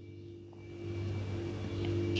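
A low steady hum, growing a little louder about a second in.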